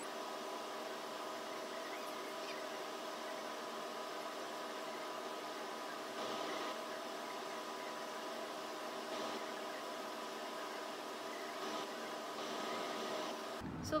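A steady background hum of several held tones over a faint hiss, unchanging throughout.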